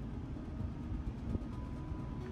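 Steady low rumble of a vehicle rolling slowly, heard with the camera riding along, with one small knock just past the middle.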